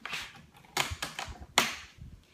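About four sharp knocks and clicks from an aluminium rolling makeup case as its parts are pushed shut and the case is handled.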